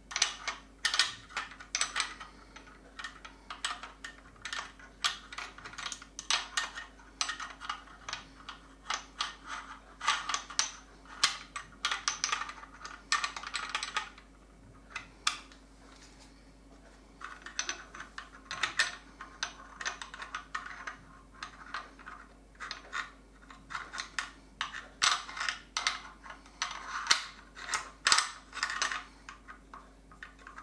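Quick runs of small metallic clicks and clatter from the steel action parts of an M1 Garand being worked back into the receiver as the bolt is refitted. The clicking comes in two long runs with a pause of about three seconds near the middle.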